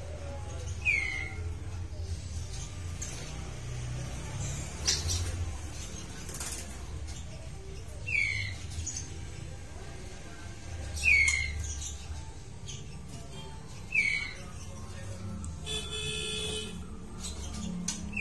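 White-rumped shama in an aviary giving a short downward-sweeping chirp four times, several seconds apart, over a low steady rumble and a few faint clicks.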